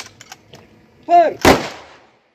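A shouted drill command about a second in, then a single crack of a rifle volley fired upward as a funeral gun salute, fading with an echo.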